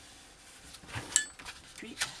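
Hands pressing a glued paper flap flat, with a faint papery rustle, and one sharp, briefly ringing clink of a small hard object just after a second in.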